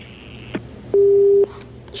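A click on the telephone line, then a single half-second beep of a telephone busy tone: the call-in line dropping as the caller hangs up.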